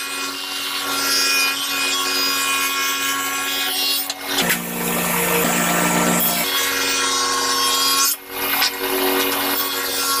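A table saw runs while a wooden strip is ripped lengthwise into thin inlay strips, fed through the blade with a push block. The steady machine tone deepens for about two seconds midway and dips briefly in level near the end.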